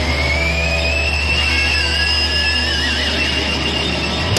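Closing bars of a hard rock song: a distorted chord and bass note held under a whining guitar-feedback tone that glides slowly upward, with a second feedback tone wavering near the end.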